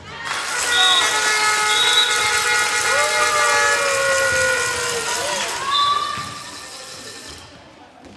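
Spectators in a sports hall cheering and shouting together, with long held cries and a few short shrill notes. The noise swells about a second in and fades out near the end.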